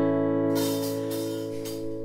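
Acoustic guitar chord strummed and left ringing, slowly fading, as a lead-in before singing.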